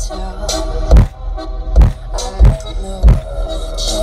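Hip hop music played loud through two FI Audio BTL 15-inch subwoofers in a 6th-order wall, powered by an Audio Legion AL3500.1D amplifier, heard inside the truck's cab. Deep bass hits land about three times every two seconds.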